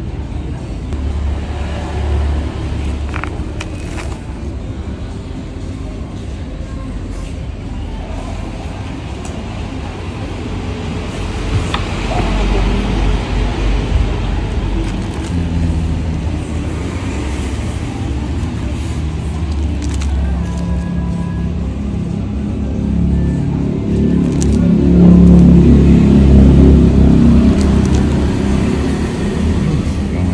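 Background voices and music over a steady low rumble, which swells to its loudest about 24 seconds in.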